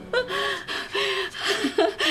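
A woman sobbing: a run of short, wavering cries broken by gasping breaths.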